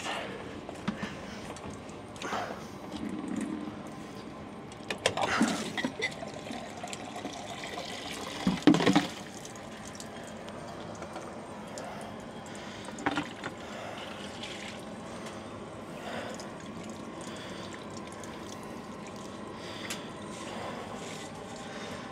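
Fuel draining and dripping from an engine fuel filter bowl into a bucket as the bowl comes off, with a few louder splashes and handling knocks, strongest about five and nine seconds in, over a steady background hiss.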